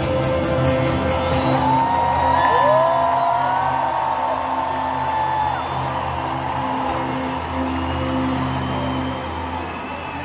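Live concert music over a stadium sound system: sustained low synth chords with no vocals, under a steady crowd noise. A few long rising calls from the crowd come between about two and five seconds in, and the music drops away near the end.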